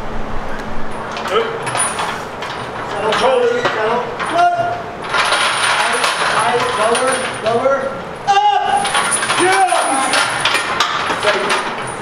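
Men shouting encouragement during a heavy barbell squat, over short metallic clinks from the chains and plates hanging on the loaded bar.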